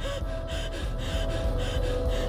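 A person panting, short quick breaths about three a second, over a held tone.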